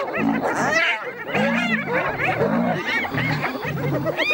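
A pack of spotted hyenas giggling and squealing, many short rising-and-falling calls overlapping, over a lion's short low growls that repeat about twice a second.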